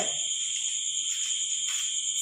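A steady high-pitched whine that holds one pitch, with a fainter, higher tone above it, and otherwise little else but room sound.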